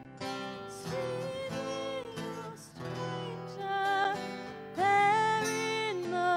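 A woman singing a slow Christmas song to strummed acoustic guitar, ending on a long held note that is the loudest part.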